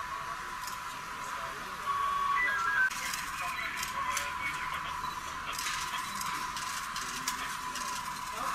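A woman's voice weeping and lamenting, with other voices near her. It sounds tinny and thin, with the low end cut away, and grows louder about two seconds in.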